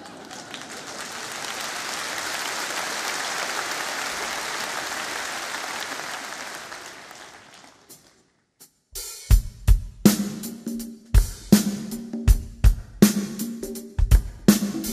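Concert audience applauding, swelling and then fading away over about seven seconds. After a moment of silence a band starts a song, with a drum kit beat of kick, snare and cymbals over bass and other instruments.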